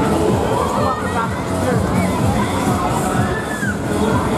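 Riders screaming and shouting as a fairground thrill ride swings and spins them through the air, over a busy crowd.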